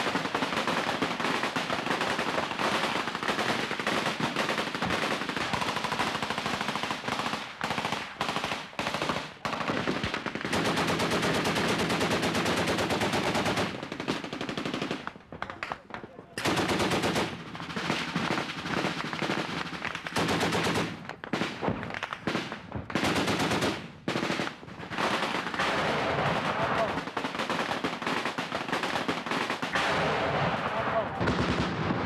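Automatic weapons fire in long, rapid bursts, with a brief lull about halfway through and shorter pauses later.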